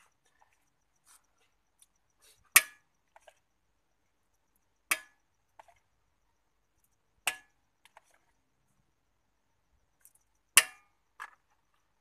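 Sharp clinks of metal cooking utensils at a wok: four loud ones about every two to three seconds, each with a short ring, and a few fainter taps between.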